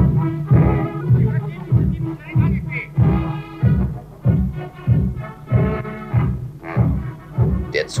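Marching band music: wind instruments over a steady bass-drum beat of a little under two beats a second.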